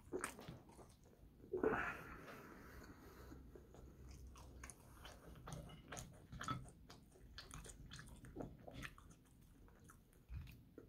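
Close-up mouth sounds of a person biting and chewing french fries, with many small clicks and crunches. A louder sound about two seconds in lasts about a second.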